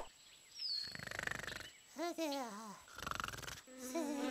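Cartoon sound effects: a fly's buzz comes in two short spells, and between them, about two seconds in, a character gives a short cartoon cry that slides down in pitch with a wobble.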